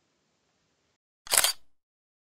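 A DSLR camera shutter firing once: a short, loud double click of mirror and shutter about a second in.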